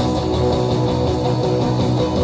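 Live rock band playing loudly: electric guitar over a steady bass line.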